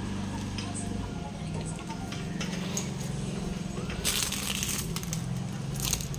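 Faint music in the background, with scattered light clicks and a brief rustle about four seconds in as a tinsel-decorated child's bicycle is moved about.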